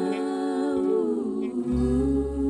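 A female vocal group singing in close harmony, holding long notes that slide down together about a second in. A low accompaniment note comes back in near the end.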